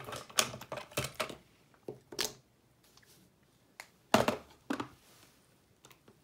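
Irregular light clicks and knocks of stationery being handled on a wooden desk: a clear acrylic organizer drawer being pulled out, then pens set down on the desktop. A quick cluster of taps comes first, with a few single knocks after, the loudest about four seconds in.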